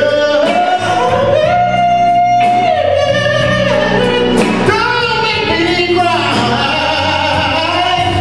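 Male soul vocalist singing live with a band of electric guitar, bass guitar and drums, holding one long high note for about two seconds near the start before moving on through further sung phrases.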